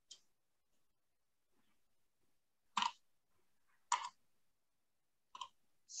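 Near silence broken by a few short, sharp clicks spaced about a second apart.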